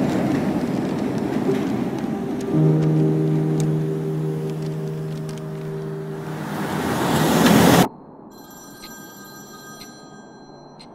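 A train rumbles past an elevated platform, and a steady horn chord sounds for about four seconds. The rushing noise swells and cuts off abruptly about eight seconds in. What follows is a much quieter room with faint, steady high-pitched tones.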